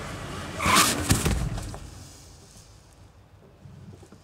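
Car seat belt being pulled across and fastened, a loud rustle and clunk about a second in, over the low rumble of the car.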